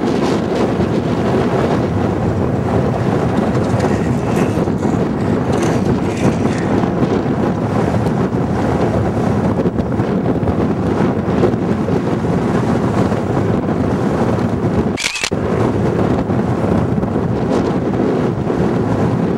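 Steady wind noise buffeting a camcorder microphone, with a brief dropout and a short high tone about fifteen seconds in.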